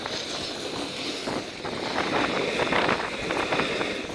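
Snowboard sliding and scraping over packed snow, with wind rushing over the microphone, an uneven hiss.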